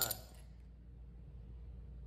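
A short clink right at the start, then a faint steady low hum with no other distinct sound.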